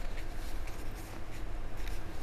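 Room ambience: a low steady rumble with a few faint scattered clicks and rustles.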